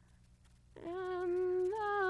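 A moment of near silence, then an unaccompanied solo female voice comes in on a long held note, stepping up a little in pitch near the end.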